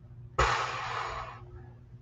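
A short, sudden burst of breath about half a second in, a hiss that fades out over about a second.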